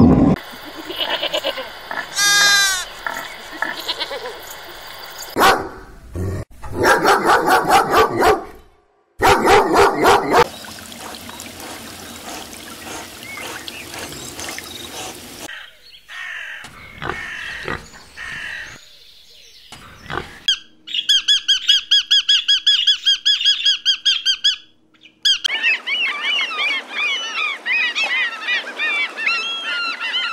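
A string of short animal-sound clips cut one after another, each stopping suddenly. About halfway through a pig grunts, and near the end many birds chirp.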